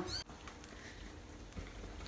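Quiet room tone with a low steady hum, after a brief sound that is cut off abruptly just after the start.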